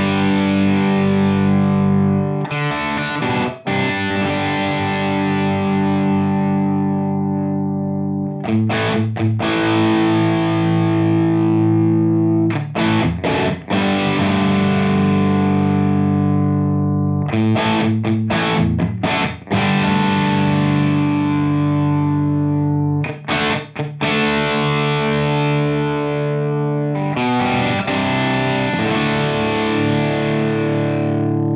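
Distorted electric guitar chords from a PRS 513 through a Mesa Boogie TC50 tube amp, taken through the Two Notes Torpedo Captor X load box and its virtual miked cabinet. Each chord rings out for several seconds, with short choppy strums in between.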